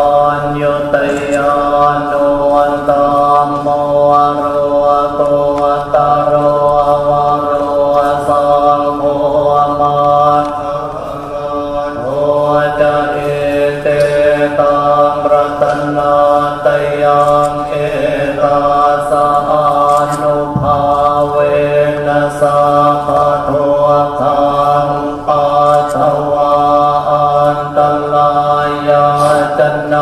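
Thai Buddhist monks chanting together in a steady, low monotone, picked up through the microphones set in front of them, with a short dip about eleven seconds in.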